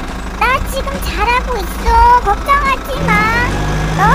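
A very high-pitched, squeaky voice making short sliding, sing-song calls, as if voicing a toy character, over a steady low hum. A low steady drone joins in near the end.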